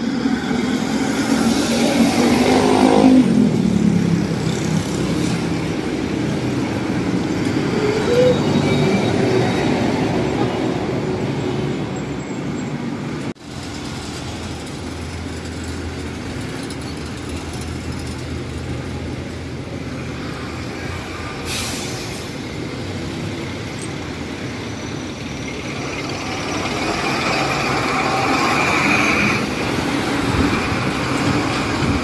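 Busy street traffic, with trucks, jeepneys and cars passing close by. A passing truck's engine note falls in pitch about two to four seconds in. Steady engine rumble and road noise follow, then a brief break just under halfway, and another close vehicle passes near the end.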